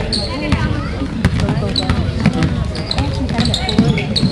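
Basketball bouncing on a hardwood gym floor during play, the knocks of the bounces heard under the steady chatter of spectators close by.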